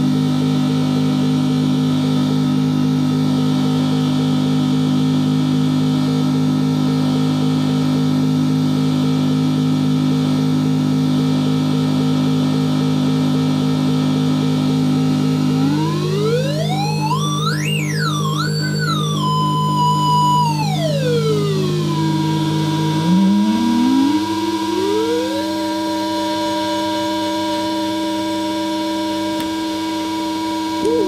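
Electronic sound generator with an optical filter, droning on several steady pitches at once. About halfway through, one tone sweeps up high, wavers and slides back down. Near the end two lower tones step up in pitch.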